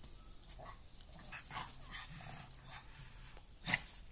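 Pug breathing and panting with its mouth open, with one short, louder burst of sound near the end.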